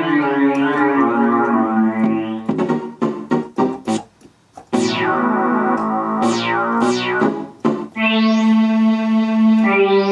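Yamaha PSR-172 portable keyboard played by hand through its built-in speakers: held synth chords, then a quick run of percussive hits about two and a half seconds in, a short pause, and sharp falling, then rising, pitch sweeps.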